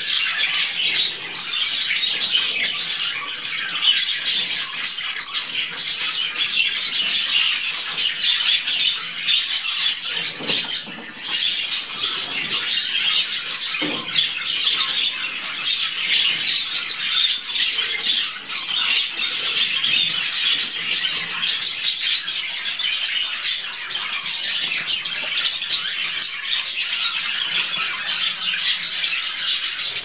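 Budgerigars chirping continuously, with many short calls overlapping.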